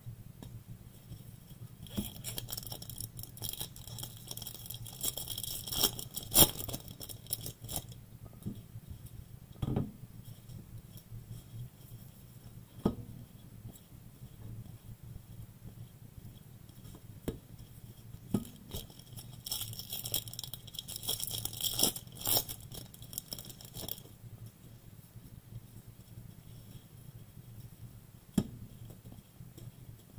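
Foil wrappers of 2021 Bowman trading-card packs being torn open and crinkled, in two stretches of several seconds each. Light clicks and taps of cards and packs on the table come between them.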